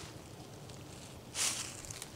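Faint background noise with one brief, soft rustle about a second and a half in.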